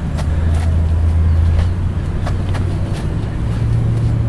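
Low, steady engine drone, its pitch stepping up slightly a little after three seconds in, with a few faint clicks over it.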